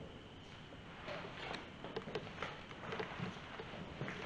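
Faint footsteps scuffing over a dusty, debris-strewn floor, with a scatter of light irregular clicks.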